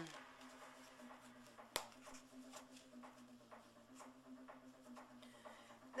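Near silence with faint rustling of hair and foam rollers being handled close to the microphone, a single sharp click just under two seconds in, and a faint steady hum underneath.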